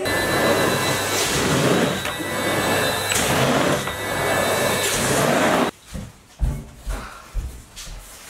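Cylinder vacuum cleaner running and pushed back and forth over carpet, a steady noise with a faint motor whine. It cuts off suddenly about six seconds in, followed by a few soft low thumps.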